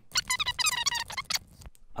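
Sped-up voice, high-pitched and chattering, as over a fast-forwarded stretch of footage. It cuts off after about a second and a half.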